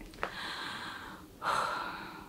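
A woman breathing audibly. There is a short catch of breath, then a long breath out, and a louder breath about one and a half seconds in.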